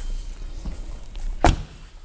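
A car's rear door being shut, one solid thud about one and a half seconds in.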